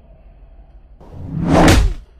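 A whoosh sound effect. It swells from about halfway through and cuts off sharply at the end.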